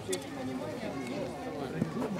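Players' voices calling out across the pitch, fairly faint, with a couple of short knocks in the play.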